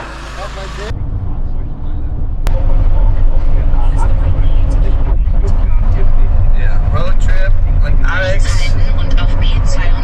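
Steady low rumble of a car on the road, swelling over the first few seconds, with voices talking faintly over it in the second half.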